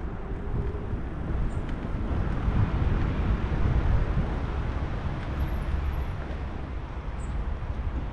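A road vehicle going by: a low rumble that swells to its loudest in the middle and fades again, over steady outdoor traffic noise.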